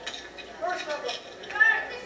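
Indistinct voices speaking briefly.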